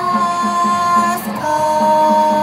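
A woman singing two long held notes, the second a little lower and starting just past halfway, over backing music with a steady pulse of about four beats a second.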